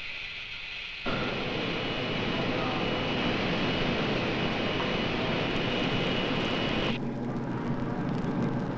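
A steady, loud rushing hiss that switches on abruptly about a second in and cuts off about seven seconds in: sound effects of simulated spaceflight in an Apollo spacecraft simulator. It gives way to the quieter road rumble of a moving bus.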